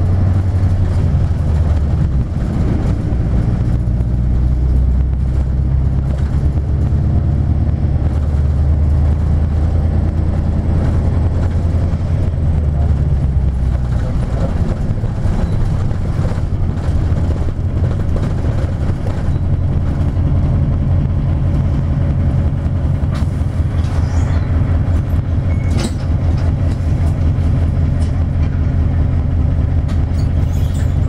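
Diesel engine and road noise of a 1999 Isuzu Cubic KC-LV380N city bus heard from inside the cabin while under way: a steady low drone. Its engine note changes about halfway through as the bus changes speed, with a few brief rattles later on.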